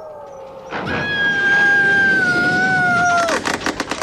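A woman's long, drawn-out cry of "No!", held for about two and a half seconds and sinking slightly in pitch, over a rushing wind-like noise. A thinner steady whistling tone runs before it.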